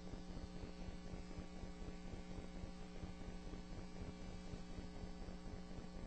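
Steady electrical mains hum on the courtroom audio feed, one unchanging low buzz with a faint static hiss.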